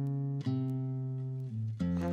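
Guitar playing slow, ringing plucked notes, letting each sustain, with new notes struck about half a second in and again near the end.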